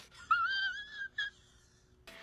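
A man's high-pitched, squeaky whine, held just under a second with a slight waver, followed by a brief second squeak.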